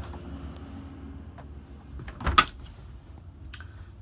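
A single sharp knock about two and a half seconds in, with a few faint clicks, over a low steady hum inside the motorhome.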